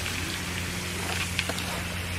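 Steady outdoor background hiss picked up by a camera's microphone, with a low steady hum underneath and a few faint clicks about a second and a half in.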